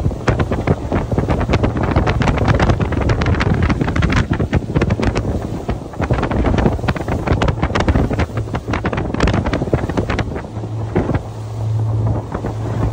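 Heavy wind buffeting the microphone of a boat running at speed, with the low, steady drone of the boat's Suzuki outboard engine underneath, heard more clearly near the end as the buffeting eases.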